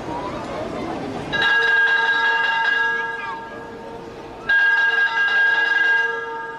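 A signal bell marking a step in a ship-launch procedure, ringing steadily in two long bursts: one of about two seconds that dies away, then, after a gap of about a second, a second that starts suddenly and runs on. Voices are heard before the first burst.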